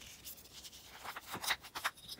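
Hands handling small plastic cosmetic pots and packaging. A few faint clicks and rustles come in the second half.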